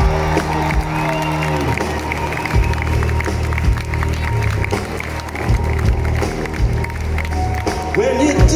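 Live rock band on an outdoor stage, recorded from the crowd on a phone. A held chord slides down in pitch and stops about a second and a half in, then drum hits and bass carry on under crowd cheering and applause.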